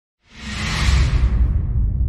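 Intro sound effect: a whoosh that swells in about a quarter second in and fades away over about a second, over a deep low rumble that carries on.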